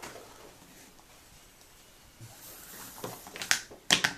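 Paracord rustling and rubbing as it is handled and drawn through the weave on a Turks head board, quiet at first, with a couple of sharp clicks near the end.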